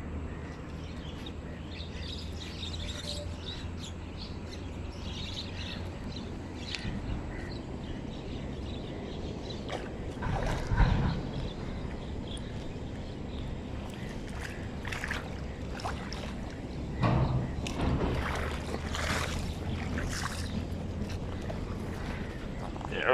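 Outdoor pond-side sound with a steady low rumble on the microphone. A loud splash at the water surface comes about eleven seconds in, and more knocks and rustles follow a few seconds later.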